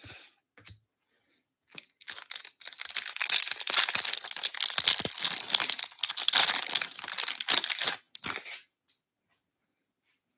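Foil wrapper of a 2021-22 Upper Deck Ice hockey card pack being torn open and crinkled by hand: a dense crackling rustle that starts about two seconds in and lasts roughly seven seconds.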